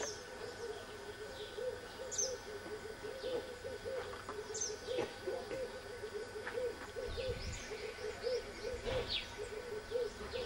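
Wildlife calling at dusk: a continuous run of short, low hooting notes, several a second, with scattered high bird chirps and whistles over it.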